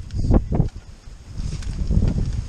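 Wind rumbling on the microphone, with a few short knocks in the first second as glass jars and plastic tubing are handled.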